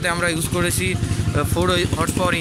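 A small single-cylinder diesel engine driving a chopper machine runs steadily, its rapid, even firing pulses low beneath a man's voice.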